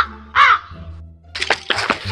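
A crow cawing twice, about half a second apart, over background music with a low steady bass. Quick clicks come near the end.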